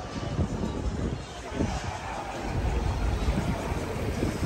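Wind buffeting the microphone on the open deck of a moving cruise ship, an uneven low rumble over the rush of the sea, with faint voices now and then.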